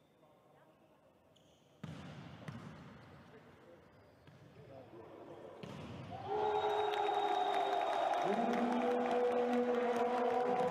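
Indoor volleyball match: the arena's background noise cuts in suddenly about two seconds in, with a sharp ball strike soon after. About six seconds in the crowd noise swells and stays loud, with long steady notes held over it as the point is won.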